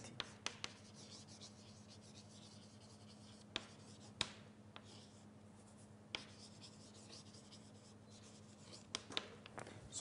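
Faint writing on a board: scattered sharp taps and short scratching strokes over a steady low hum.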